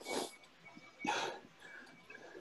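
Two sharp, noisy breaths about a second apart, a person breathing hard close to the microphone.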